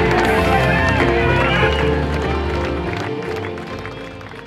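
Background music, fading out over the second half.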